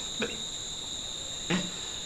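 A steady high-pitched background whine, unbroken throughout, with a fainter, higher tone above it.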